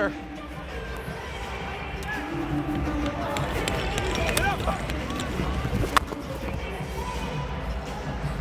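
Arena game sound of box lacrosse: steady crowd noise with a few short shouts from players, and a single sharp knock about six seconds in, under background music.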